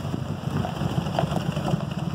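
1949 Chrysler Windsor's flathead six-cylinder engine running steadily as the sedan drives slowly past.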